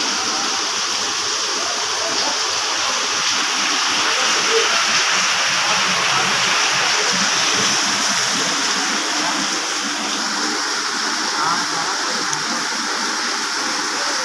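Torrential rain pouring down in a steady, even hiss.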